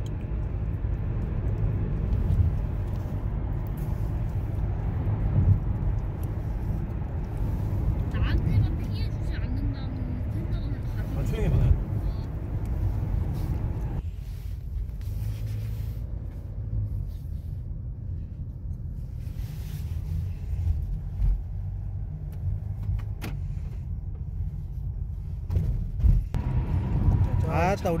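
Low, steady road and engine rumble inside a moving car's cabin. About halfway through it changes abruptly, losing much of its higher hiss while the low rumble carries on.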